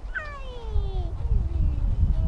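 A high voice gives one long call that glides downward in pitch for nearly two seconds, over a low rumble.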